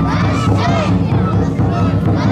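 Many children's voices shouting and calling together as they haul a festival float along the road by rope, over a steady low background.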